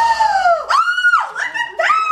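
A woman's high-pitched squeals of excited surprise, three cries in a row, the middle one the highest.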